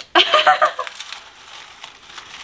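A short burst of laughter, then a softer rustling and crinkling as hands dig through tissue paper and shredded paper filler in a cardboard shipping box.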